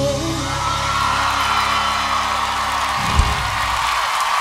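The close of a live country duet with band: the singers' held final note ends early, and the band's last chord sustains until about three seconds in, stopping with a final hit. Under it a studio audience whoops and cheers, growing louder.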